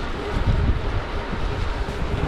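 Wind buffeting the microphone of a camera carried on a moving bicycle: a loud, uneven low rumble that rises and falls in gusts.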